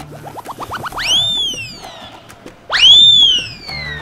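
Comedic whistle sound effect: a quick run of short rising chirps climbing higher, then two loud whistling swoops that each shoot up and slide slowly back down, the second the loudest and longest.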